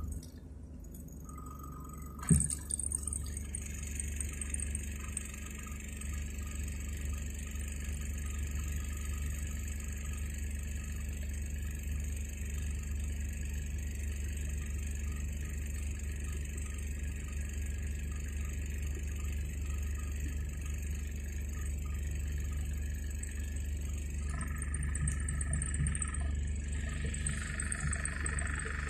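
Inside a car with the engine running: a steady low rumble, with a single sharp click about two seconds in. A thin, steady high-pitched sound runs above it.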